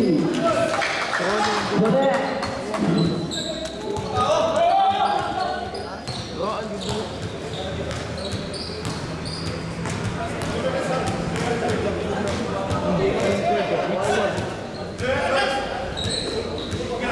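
Basketball bouncing on the court during play, with players and spectators shouting and talking throughout, in a large hall.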